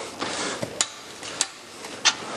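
A few sharp metal clicks from a hand wrench on a car wheel nut as the last nut is tightened.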